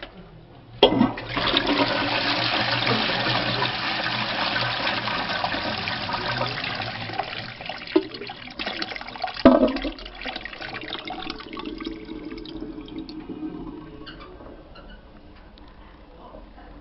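A toilet flushing from a wall-mounted chrome lever: a sharp click about a second in, then a loud rush of water through the bowl that slowly fades. Two knocks come around eight and nine and a half seconds in, and the flow dies down to a quieter steady hiss near the end.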